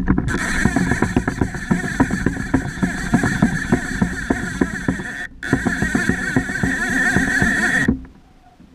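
Fishing reel drag paying out line in a long run as a hooked king salmon pulls against it: a loud rapid clicking buzz that breaks off for an instant about five seconds in, then resumes and stops suddenly.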